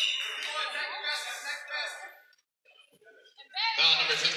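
Several people's voices talking in a gymnasium, dropping away to near silence a little past halfway, then picking up again just before the end.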